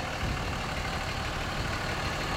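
Steady low rumble of a 5.9L Cummins inline-six diesel in a 2006 Dodge Ram 2500 idling.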